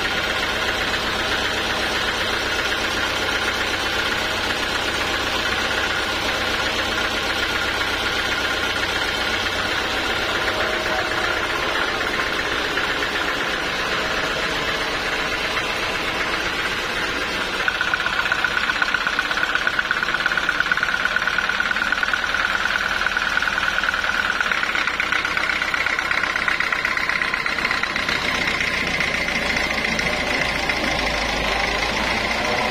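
Vertical band sawmill running and cutting through a teak log, a steady mechanical drone. A little past halfway it gets louder and a steady whine sets in, which shifts higher in pitch near the end.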